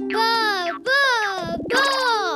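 Cartoon baby character's high-pitched voice giving three sung, wordless calls, each gliding up and down in pitch, over a soft held background music note.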